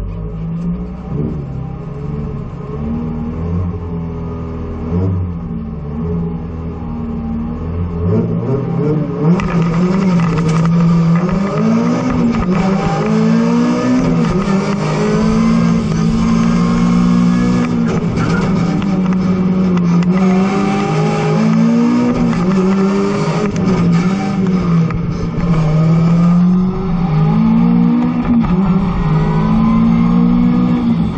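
Mazda MX-5 ND's four-cylinder engine heard from inside the cabin, running steadily at low revs for about eight seconds, then pulling away hard. It revs up and down repeatedly, the pitch rising and falling with throttle and gear changes through the slalom.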